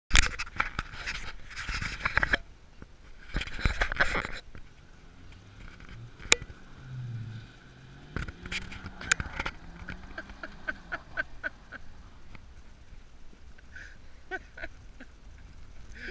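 Ford F-250 pickup engine revving up and down at a distance as it spins donuts on a snow-covered lot, its pitch rising and falling slowly. Loud rushing bursts of noise on the microphone in the first four seconds, with scattered sharp clicks.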